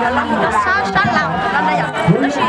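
Speech: a young woman talking, with other chattering voices behind her.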